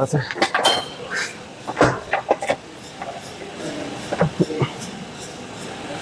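Scattered knocks and clicks from a seated leg press machine as the feet are set on its metal footplate and the press begins, with faint voices underneath.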